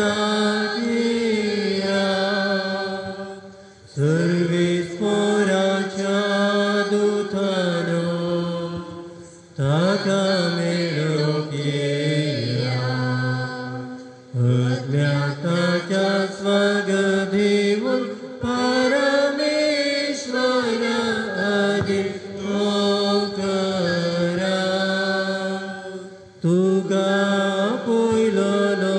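A slow hymn sung in a chant-like style: a voice holds long notes in phrases of a few seconds, with short breaths between them.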